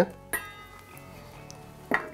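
Soft background music with held notes. About a third of a second in there is a single light click as a skinned almond, squeezed out by hand, drops into a stainless steel bowl.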